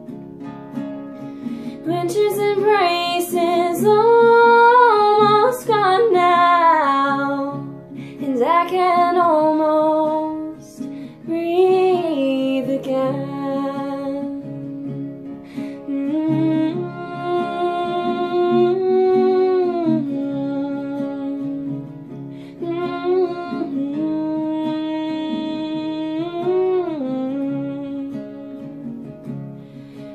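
A woman singing with her own acoustic guitar accompaniment, in sung phrases of several seconds with long held notes.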